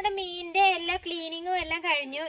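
A woman's high-pitched voice in drawn-out, wavering sing-song phrases.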